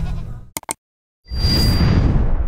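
A goat bleats, a wavering call that fades out within the first half-second. After two small clicks and a short gap of silence, a loud whooshing, booming sound effect starts about a second and a quarter in.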